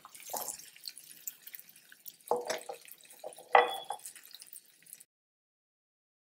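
Wooden spatula scraping and knocking against a non-stick pan as sesame-coated nibbles are tossed in a little oil, with scattered light crackles; two louder knocks come a little past two seconds and a little past three and a half seconds in. The sound cuts off suddenly about five seconds in.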